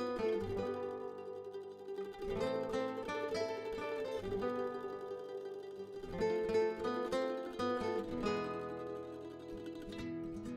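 Background music: a melody of picked notes on a plucked string instrument.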